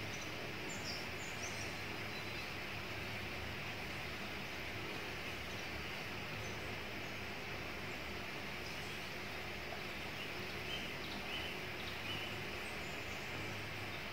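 Steady outdoor background noise of a forest, with a few faint, high bird chirps about a second in and again later.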